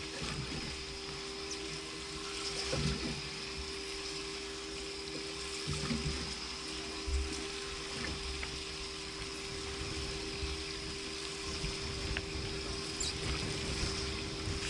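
Water lapping and slapping against the hull of a fiberglass fishing boat sitting on the sea, with a constant low hum underneath.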